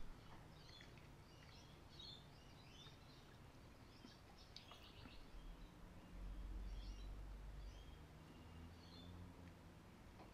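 Faint birds chirping in scattered short calls over the low, steady hum of a car driving, which grows louder for a couple of seconds after the middle.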